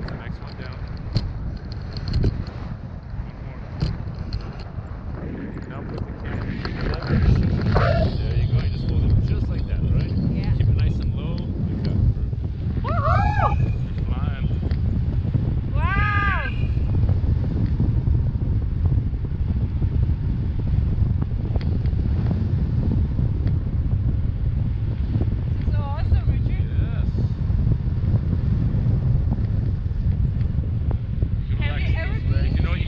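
Wind buffeting the camera microphone during a tandem paraglider flight, a continuous low rumble that grows stronger about seven seconds in. A few short high-pitched voice cries come through it around the middle.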